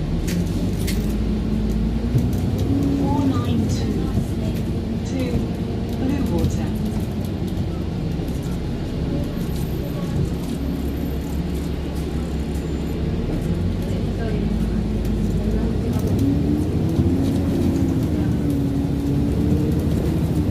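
Interior sound of an Alexander Dennis Enviro400 diesel bus under way: a steady low engine and drivetrain rumble, with a pitched drone that rises and falls as the bus speeds up and eases off.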